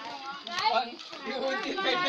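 Voices of people and children talking and calling out in the background; no other distinct sound stands out.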